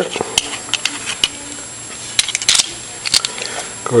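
Scattered small clicks and a brief scrape of metal parts being handled and fitted together, as a threaded attachment device is put onto a trigger-guard lock.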